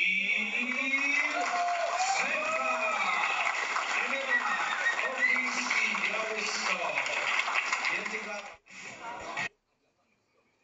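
A man's voice speaking over a steady background haze, played back from a recording; it cuts off suddenly near the end when playback is paused.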